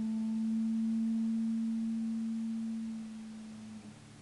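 A single electric guitar note left ringing after a chord, sustaining steadily and then slowly fading out near the end.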